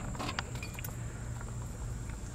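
A few faint, light clicks and clinks from a hand working at the dashboard of a 1965 Mustang, over a low steady hum.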